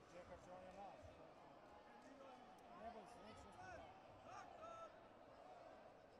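Faint, indistinct chatter of distant voices, with a few faint knocks.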